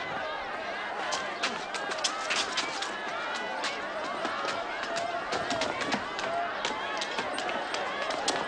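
A crowd of onlookers murmuring, many voices overlapping, with many short sharp clicks and scuffs scattered throughout.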